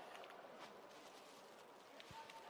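Near silence: faint, even background noise.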